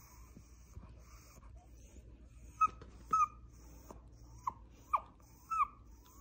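A Yorkshire Terrier whining with a plush toy held in her mouth. She gives a series of five or six short, high-pitched whines, starting about two and a half seconds in, some bending up or down in pitch.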